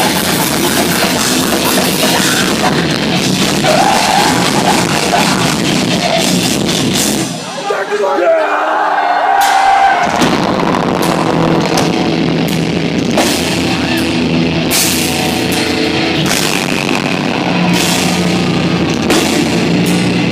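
A deathcore band playing loud live heavy metal with distorted guitars, bass and drums. About seven seconds in the bass and drums drop out for about two seconds, then the full band comes back in.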